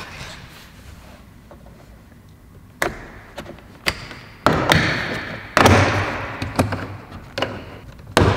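Plastic interior door trim being pried and pulled off the door panel. From about three seconds in there is a series of sharp clicks and snaps as its built-in clips let go, with stretches of plastic scraping and rubbing between them.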